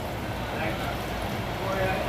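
Chicken wings frying in hot oil in a skillet, a steady sizzle.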